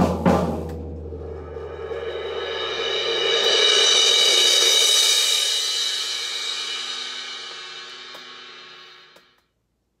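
Soft yarn mallets on a drum kit: the last couple of tom strokes ring out at the start. Then a mallet roll on a cymbal swells to a peak about four to five seconds in and fades away, the soft swish effect of yarn mallets on cymbals.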